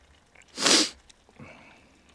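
A person sneezing once: a single short, loud burst about half a second in, followed by a faint breath.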